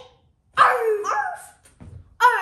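A child's voice imitating a puppy: one drawn-out dog-like call about half a second in, lasting about a second, its pitch sliding down. A faint low thud follows near the end.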